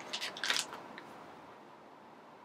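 Small plastic bag of wax melt pieces crinkling as it is handled, a few short crackles in the first second, then quiet.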